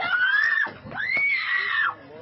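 A person screaming in two long, high-pitched cries, the second starting about a second in.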